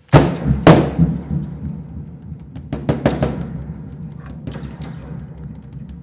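Large bass drum struck with sticks by two players: two loud hits in the first second, then scattered lighter strikes, with the drum's low ring sustained beneath them.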